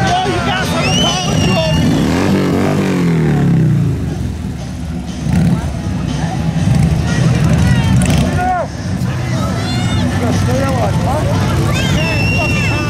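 A motor vehicle engine running with a steady low drone, its pitch sweeping down between about two and four seconds in; shouting voices over it.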